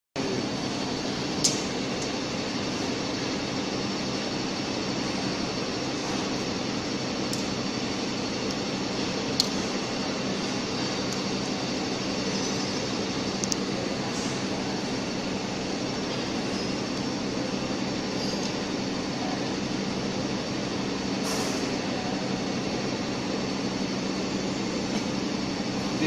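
Steady hum and drone of machinery running, with a few short sharp clicks.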